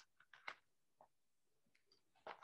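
Near silence with a few faint, short clicks and rustles in the first second, from paper being handled.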